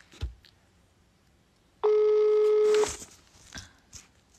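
Telephone ringback tone: one steady beep about a second long, the outgoing call ringing at the other end and not yet answered. This is the Swedish ringback tone, a single pitch of about 425 Hz. A short thump comes near the start.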